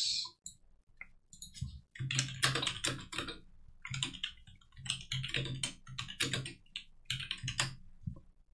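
Typing on a computer keyboard: a few separate clicks at first, then a quick run of keystrokes from about two seconds in until just before the end, as a short phrase is typed.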